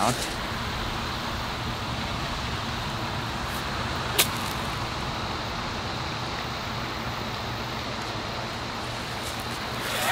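A golf chip shot with an 8-iron: one sharp click of the clubface striking the ball off the grass about four seconds in, over a steady outdoor background hiss.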